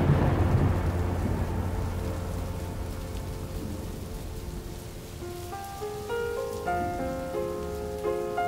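A thunderstorm effect in a song: a low thunder rumble and steady rain, fading away. About five seconds in, a gentle melody of single notes begins over the rain.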